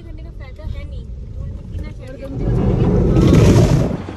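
Car driving, heard from inside the cabin: a low engine and road rumble. About two seconds in, a loud rushing of water swells up as the car passes a roadside waterfall, then cuts off suddenly at the end.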